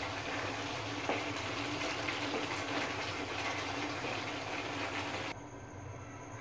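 Chicken in spice paste sizzling steadily in hot oil in a nonstick kadai, the masala being roasted on high flame once the yogurt's water has cooked off. The sizzle drops away abruptly near the end.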